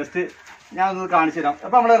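A man talking in short phrases with a brief pause: speech only.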